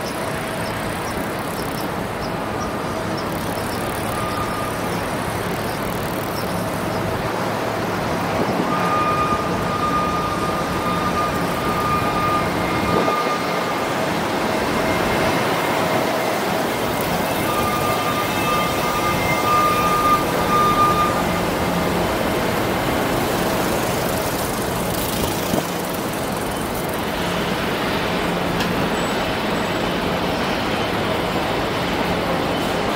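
Steady city street traffic noise heard while cycling, with a faint steady tone coming and going twice in the middle.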